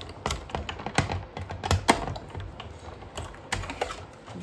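Big Shot hand-cranked die-cutting machine being cranked, rolling a magnetic platform with steel dies and paper through its rollers: a run of irregular sharp clicks and creaks over a low rumble.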